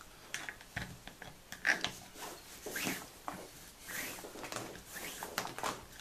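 Paracord being pulled through under and over other strands of cord on a Turk's head board with a metal fid: irregular rustling swishes of cord sliding against cord, with small clicks and taps.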